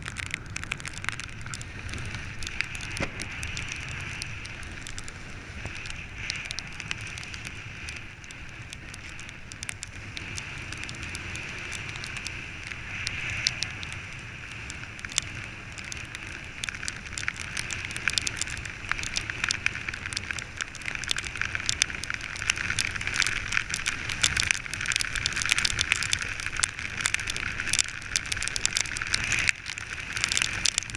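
Wind and water noise on the camera of a windsurfer under way: a steady rushing hiss with a low rumble and many small crackles of spray and chop hitting the rig and board. It grows louder in the second half.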